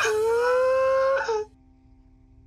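A young man's long crying wail, held for about a second and a half with its pitch rising slightly before it breaks off, coming through a phone's speaker on a video call: an emotional outburst.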